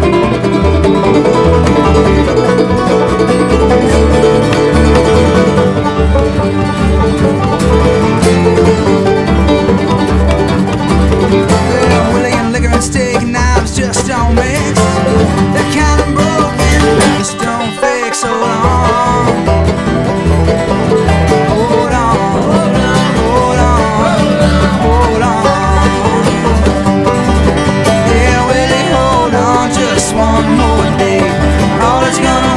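Band playing an instrumental passage of a country-style song: plucked strings over a steady bass beat, with a wavering lead line coming in around the middle and a brief drop in level just after it.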